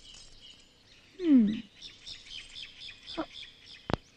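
Small birds chirping quickly and continuously, with a brief human voice sound falling in pitch about a second in and a sharp click just before the end.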